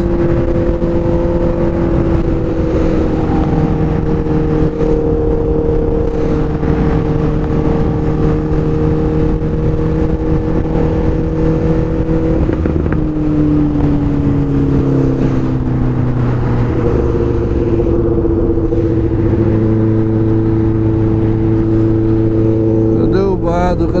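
Honda Hornet 600's inline-four engine running steadily at highway cruising speed, with wind rushing over the microphone. About halfway through, the engine note drops in pitch over a few seconds and then holds steady again at the lower revs.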